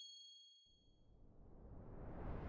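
Logo-sting sound effect: the ringing tail of a bright, bell-like chime fading out, then a faint rushing swish that swells from under a second in.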